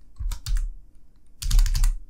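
Typing on a computer keyboard: a few separate keystrokes, then a quick run of louder key clicks about one and a half seconds in.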